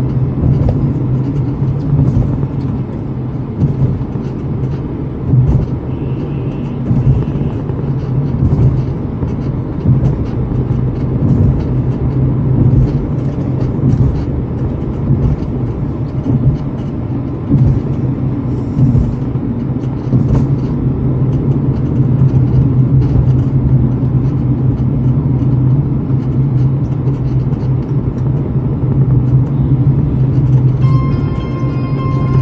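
Road and engine noise inside a moving Tata car's cabin: a steady low drone with frequent small knocks and rattles from the road surface, a little louder in the latter part.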